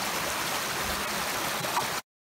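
Small, stony forest stream running: a steady rush of water that cuts off abruptly at the very end.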